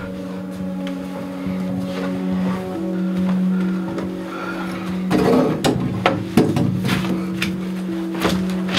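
Background music: a score of steady, sustained low notes held through, with a few brief louder sounds about five to six and a half seconds in.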